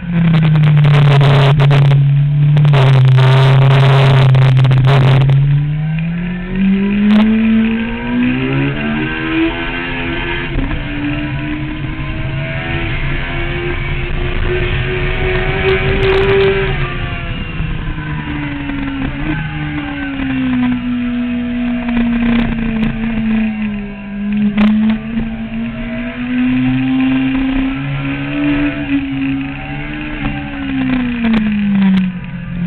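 Honda CBR954RR's inline-four engine heard onboard on a track lap. Its note holds low and steady for the first few seconds, then climbs smoothly for about ten seconds as the bike accelerates, falls away again, and rises and drops once more near the end.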